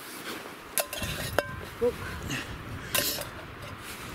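Metal camping cookware clinking and knocking as it is handled, a few sharp clinks, one ringing briefly about a second and a half in.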